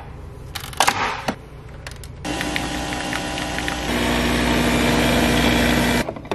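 Nespresso Vertuo coffee machine: a few sharp clicks as its domed lid is handled and closed, then about two seconds in the machine starts its brew cycle with a steady motor hum. About four seconds in the hum steps louder and lower.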